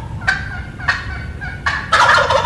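Male wild turkey gobbling in a field recording: a rapid rattling gobble tails off, a few short calls follow, and a second loud gobble starts near the end.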